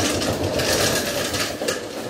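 Shuffling, rustling noise of people moving about and repositioning, with a rattling rumble.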